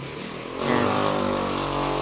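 A motor vehicle engine that swells in about half a second in and then runs steadily with an even hum.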